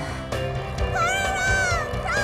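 A high, squeaky cartoon character's voice calling out in a long, drawn-out cry that rises and falls in pitch, starting about a second in, with a second cry beginning at the very end, over background music.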